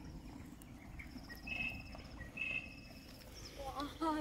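Faint outdoor ambience: a thin, high insect trill and two short chirps about a second apart, over a low rumble of wind or microphone handling.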